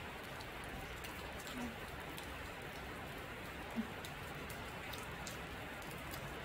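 Steady rain on a sheet-metal gazebo roof: an even hiss with a few faint drop ticks scattered through it.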